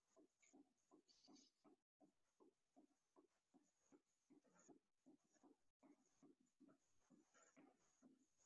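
Near silence with faint, soft rhythmic sounds at about three to four a second from a person running in place with high knees: footfalls on the gym floor and breathing.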